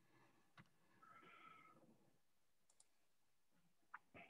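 Near silence, with a few faint single clicks and a faint short higher-pitched sound about a second in.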